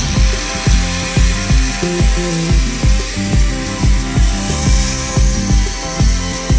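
Handheld angle grinder with an abrasive disc grinding metal, a steady high hiss, under background music whose bass beat, about two a second, is the loudest sound.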